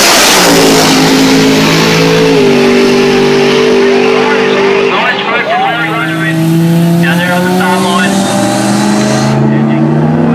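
Drag-racing cars running flat out down the strip, their engine note holding high with a shift in pitch about two seconds in. After a cut about five seconds in, another pair of cars runs steadily at the start line under voices.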